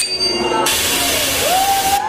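Dance-performance music mix playing over speakers: a loud hiss of noise cuts in just over half a second in and stops sharply at the end, with a sliding tone under it near the end.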